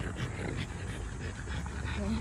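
French bulldogs panting steadily.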